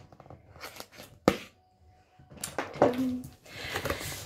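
A cardboard subscription box being opened by hand: light rustling, one sharp snap a little over a second in, then cardboard scraping and rustling as the lid comes off.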